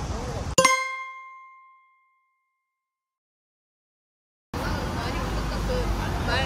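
A single bright bell-like ding sound effect about half a second in, ringing out and fading over a second or so. Dead silence follows, then outdoor street background sound returns about four and a half seconds in.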